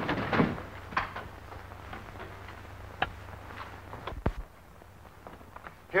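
A few scattered knocks and clicks of a door and footsteps as men hurry out of a room. Under them runs the steady low hum of an old film soundtrack.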